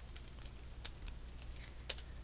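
Computer keyboard typing: a faint run of light, irregularly spaced keystroke clicks, with one louder click near the end.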